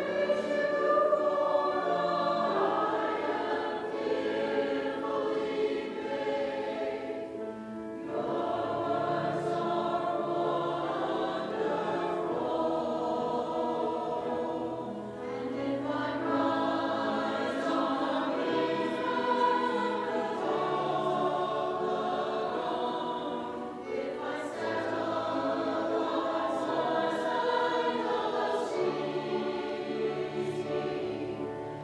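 A church choir of mixed voices singing a sacred choral piece, in long phrases with brief pauses between them about every eight seconds.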